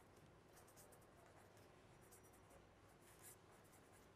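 Faint scratching of a pen on paper as a word is written by hand, in a series of short strokes with the clearest near the end.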